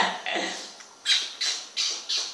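A child's voice briefly at the start, then a run of short, breathy, high-pitched squeals, about three a second, from children playing: an older child with a baby, in laughing play.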